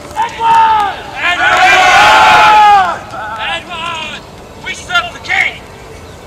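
A group of re-enactors shouting: a short shout, then a long shout of many voices together lasting about a second and a half, followed by quieter scattered shouts and calls.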